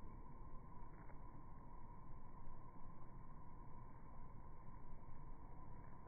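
Faint, steady, muffled background noise of an outdoor phone recording, with two faint soft knocks: one about a second in and one near the end.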